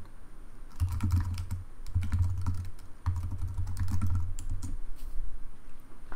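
Typing on a computer keyboard: a run of key clicks as a web address is entered, under a low hum that comes and goes three times.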